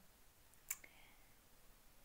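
Near silence with faint room hiss, broken by one short, sharp click under a second in.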